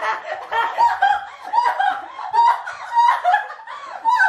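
People laughing, a steady run of short laughs about two or three a second.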